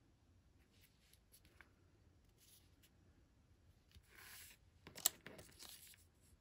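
Quiet paper handling: faint rustles and brushing as a strip of patterned paper is rubbed and pressed down onto a card by hand, with a sharp tap just after five seconds.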